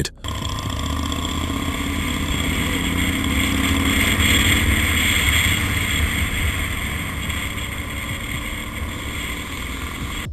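Motorcycle engine running steadily at road speed, heard from an onboard camera with wind noise over the microphone. The engine note and wind swell slightly near the middle, then ease off.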